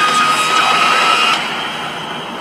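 Trailer sound design played back: a steady rushing noise with a thin, held high tone, which cuts off about one and a half seconds in, leaving a quieter hiss.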